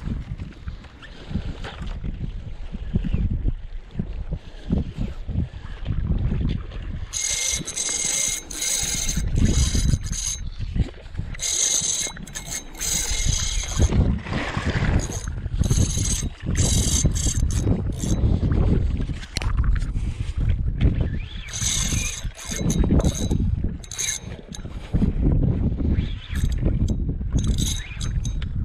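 A spinning reel whirring in repeated short bursts as its handle is cranked to work a lure back in. Under it, wind buffets the microphone and water laps.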